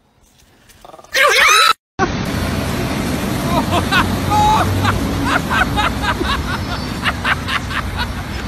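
Automatic car wash running, its rotating brushes making a steady wash of noise, with people laughing over it. Just before it, about a second in, comes a short loud cry that bends up and down in pitch.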